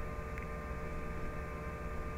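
Quiet, steady background hum and hiss with a few faint, unchanging tones, and a faint tick about half a second in.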